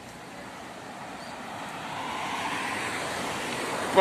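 Street traffic: a car's tyre and engine noise swelling as it approaches, growing louder through the second half.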